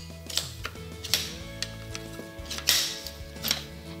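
Aluminum shock-corded chair poles clacking and clicking as a folding chair's hubbed frame is pulled open and the poles snap into place. There are several separate clicks, the strongest about a second in and near three seconds, over steady background music.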